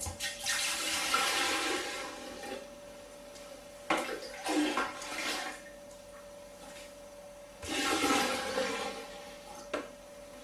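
Fermented wash being poured from a jug into an air still's stainless-steel boiler, splashing and gurgling in three spells of a second or two each, as the boiler is filled toward its four-litre mark.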